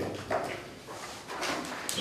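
A short pause in a man's speech: faint room noise with a few light clicks, spread out across the pause.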